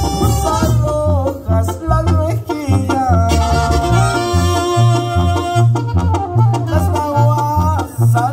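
Live band playing upbeat Mexican-style music over a PA: a bouncing two-note bass line on every beat under a held, gliding melody from horn and keyboard.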